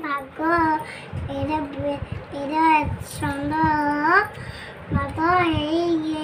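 A young girl's voice chanting a lesson from her school book aloud in a sing-song, in held phrases with short breaks.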